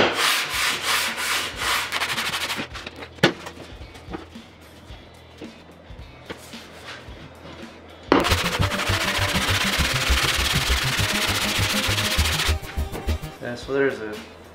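Cast-iron sole of a vintage Stanley hand plane being rubbed back and forth on 120-grit sandpaper, a rasping scrape with each stroke, lapping the sole flat to work out a dip at the front. Brisk strokes in the first couple of seconds, quieter for a while, then a loud, fast, steady run of sanding from about eight seconds in until near the end.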